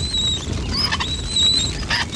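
Cartoon sound effects of a spit roast over a fire: a low steady rush with high, wavering squeaks that come and go above it.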